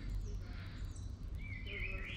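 Small birds calling over a low, steady background rumble: a couple of short, high, falling chirps, then a warbling song phrase starting about one and a half seconds in.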